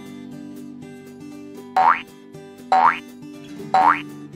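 Light background music with three short, loud rising 'boing' sound effects about a second apart in the second half, the ticks of a quiz countdown timer counting down to the answer.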